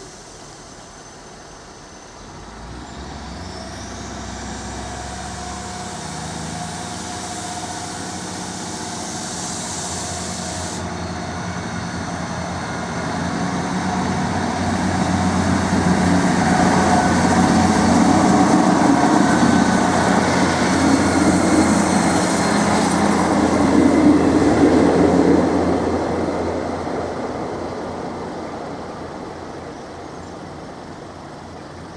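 A Class 158 diesel multiple unit approaching and running past over the level crossing. Its diesel engine and its wheels on the rails build steadily to loudest about two-thirds of the way in, then fade as it draws away.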